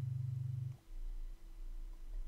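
Low synthesized notes coming out of a grain delay whose pitch is being randomized, mostly landing on low notes. A buzzy low note sounds for under a second at the start, then gives way to a deeper low tone with a faint steady higher hum.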